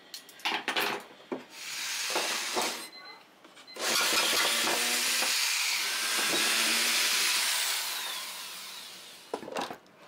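Cordless drill boring into a wooden block: a short run, then a longer run of about five seconds that tails off near the end. A few knocks of wood at the start.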